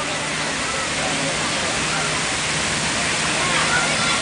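Many fountain water jets spraying and falling back into a large pool, a steady, even rushing hiss. Faint, distant voices sit underneath it.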